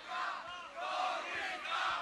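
Crowd of audience members shouting and cheering, many voices overlapping at once.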